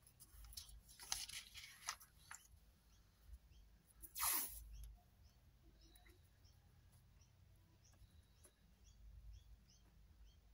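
Paper and vellum being handled on a craft mat: soft rustling in the first couple of seconds, then one louder, brief sliding swish about four seconds in, followed by faint small ticks.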